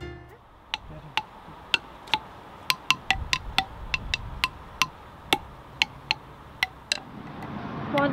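Homemade wooden xylophone of branches lashed together with cord, struck with a stick: a loose string of dry wooden knocks at about two to three a second, each at one of a few different pitches.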